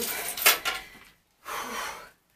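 Rustling and knocking of bags being handled and set down on the floor, with one sharper knock about half a second in. The sound breaks off to silence just after a second, then fainter rustling follows.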